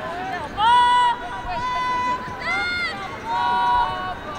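Women lacrosse players shouting short, high-pitched calls to each other during play, four or so drawn-out calls in quick succession. The loudest come about half a second in and again near the end.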